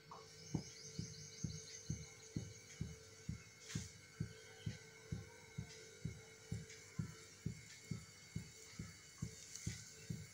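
Faint, low, even thumps about twice a second over a steady hum.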